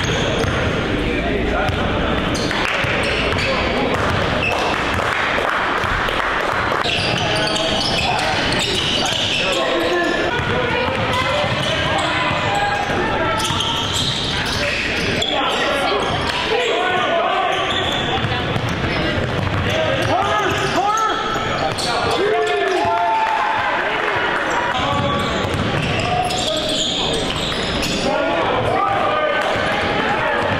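Basketball gym sound: a ball bouncing on a hardwood court, with players' voices and shouts echoing through a large hall.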